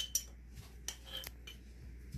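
Metal spoon clinking and scraping against the inside of a glass jar as soft butter is scooped out. There is a sharp clink at the start, then a few lighter clicks.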